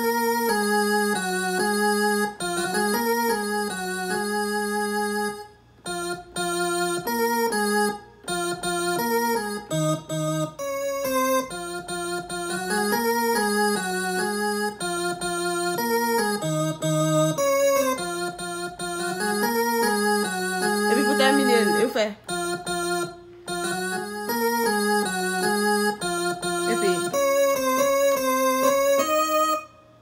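Piano sound played by hand on an Akai MPK261 MIDI keyboard: a melodic line of short phrases over a repeating pattern. The playing stops briefly about five and a half, eight and twenty-two seconds in.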